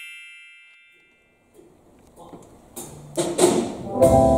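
A bright ringing chime sound effect dies away over the first second. After a moment of near silence, concert-hall stage sounds build from a couple of seconds in: a few sharp knocks and a low held note.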